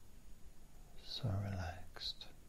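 A man's soft, hushed voice saying a single short word about a second in; the rest is faint room tone.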